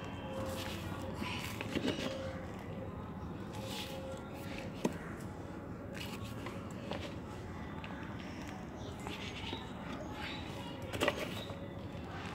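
Soft crunching and rustling of potting mix as a hand presses it down around a rose stem in a clay pot, with one sharp click about five seconds in.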